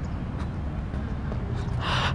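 A steady low rumble, like wind and handling noise on a handheld camera's microphone, with a short breathy sigh near the end.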